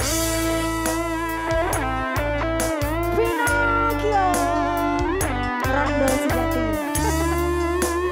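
A live band playing an instrumental intro: an electric guitar plays a lead melody with bent, wavering notes over a steady bass line and regular drum hits.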